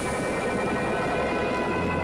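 Cartoon sound effect of a small submarine surfacing: steady churning, bubbling water with a low motor hum that grows in the second half, under a held music chord.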